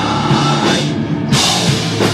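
Live rock band playing with distorted electric guitars, bass and drum kit. The top end thins out briefly just after a second in, then the full band comes back in with a loud hit.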